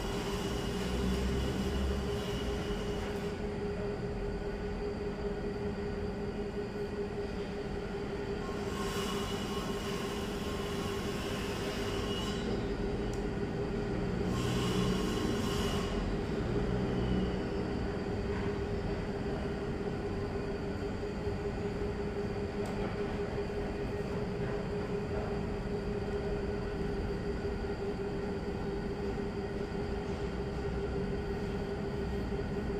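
A steady mechanical hum with a constant mid-pitched tone. Twice, about nine and fourteen seconds in, a brief hissing sound rises over it.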